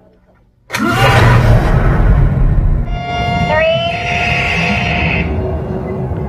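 Film soundtrack: after a quiet start, a sudden loud blast of sound effects with a deep rumble comes in under a second in, then carries on as music with steady high electronic tones and a quick rising sweep around the middle.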